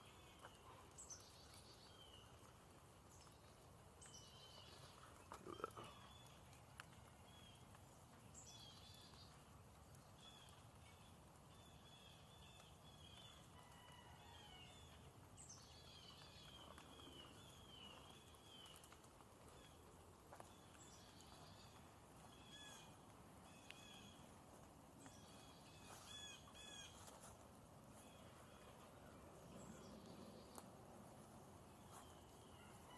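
Faint outdoor ambience with small birds calling again and again: short chirps and quick down-sliding notes, busiest in the middle stretch. A brief, somewhat louder low sound comes about five seconds in.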